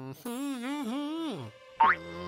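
A cartoon character's wavering, wordless voice, followed near the end by a short, loud upward "boing"-like cartoon sound effect.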